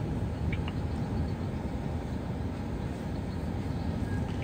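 Steady engine and tyre noise heard from inside a moving car's cabin, with a couple of faint ticks about half a second in.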